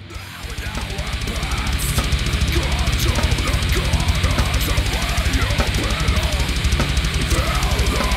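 Heavy metal music cutting in suddenly: a full band with a very fast, even kick-drum pulse under dense distorted sound.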